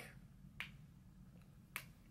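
Near silence with two faint clicks, one about half a second in and one near the end.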